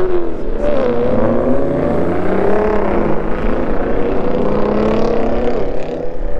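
Car engine revving as cars drive around the lot. The pitch peaks right at the start, drops, then rises and falls as the car accelerates and eases off.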